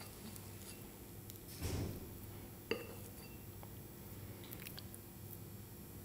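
Faint sounds of a metal teaspoon working a sticky nut-butter paste in a small ceramic bowl: a soft scrape, then one sharp clink of spoon on bowl about halfway through, followed by a few light ticks.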